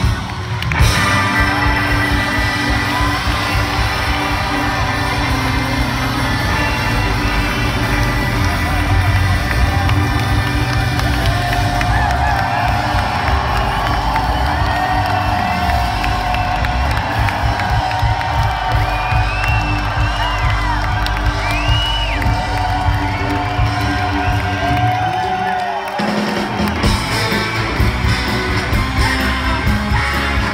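Live soul band playing: electric guitar, baritone saxophone, organ, bass and drums, with the crowd cheering and whooping. The bass and drums drop out briefly near the end before the band comes back in.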